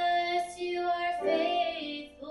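A solo voice singing into a microphone, holding long notes with some vibrato, over keyboard accompaniment.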